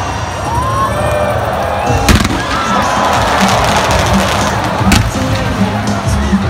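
Ballpark fireworks going off over a crowd cheering to stadium music, with two sharp bangs, one about two seconds in and one near the end.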